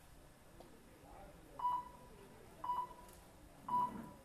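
Three short electronic beeps, each one steady high tone, about a second apart.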